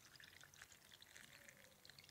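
Very faint pouring of tiger nut and ginger drink from a plastic jug into a small cup, a thin liquid trickle barely above near silence.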